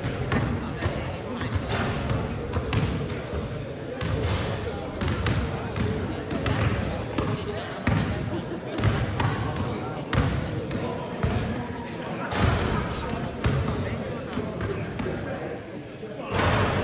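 Basketballs being dribbled and bounced on a hard indoor court. The thuds come irregularly and echo in the large hall, over indistinct voices.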